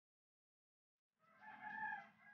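A rooster crowing once, starting a little past halfway through after near silence.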